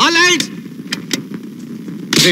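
A short burst of a man's voice, then a low steady rumble of an idling engine with two light clicks about a second in.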